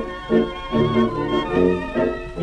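A 1929 orchestra recording of a tango: short, accented chords on the beat with a sustained melody line above them and a steady low hum beneath.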